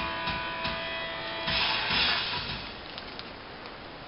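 Plastic-sleeved magazines rustling and crinkling as they are handled and swapped in a cardboard box, loudest from about a second and a half in. Underneath is background music with a held guitar chord that fades out early on.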